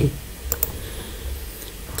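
A few short clicks at a computer about half a second in, over a low steady background hum.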